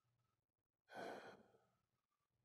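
Near silence, broken about a second in by a man's short, soft breath out, like a faint sigh.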